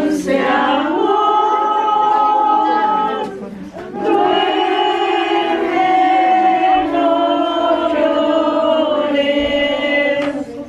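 A group of voices singing a slow hymn together in long held notes, with a short pause between phrases about three seconds in.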